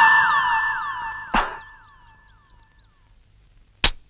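Electronic synthesizer sound effect in a film song's soundtrack: a held tone with a string of quick falling pitch zaps that fades away over about three seconds. A sharp hit comes about a second and a half in and another near the end.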